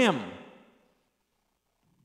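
A man's voice saying its last word, falling in pitch and trailing off within the first second, then near silence.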